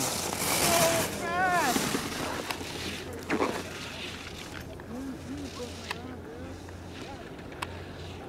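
Spectators' voices at a ski race, with a wavering shout about a second in over a rushing hiss that dies away after about two seconds. The rest is quieter outdoor ambience with faint distant voices.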